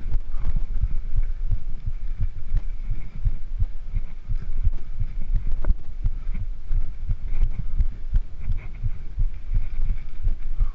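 Mountain bike rolling over rocky dirt singletrack, heard through a handlebar-mounted camera: a dense, irregular low rumble and thumping as bumps in the trail jolt the bars and the mount.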